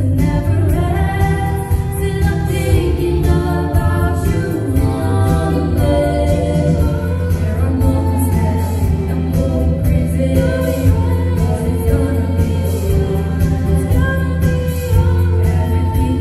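A vocal quartet singing in four-part harmony, the voices moving together over a steady low bass line.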